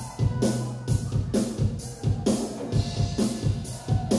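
Live rock band playing an instrumental passage: a steady drum-kit beat, about two hits a second, under electric guitar and keyboards with a held bass line.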